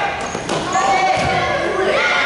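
Futsal game in a gymnasium: players and spectators calling out indistinctly, with the ball thudding on the hard court a couple of times, all echoing in the hall.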